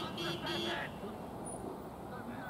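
A car horn tooting three short blasts in quick succession within the first second, then crowd voices.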